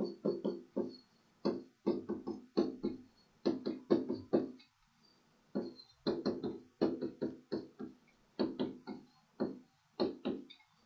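Stylus strokes on a tablet screen during handwriting: a quick, irregular run of short taps and scrapes, each with the same brief ringing tone from the device, pausing once in the middle.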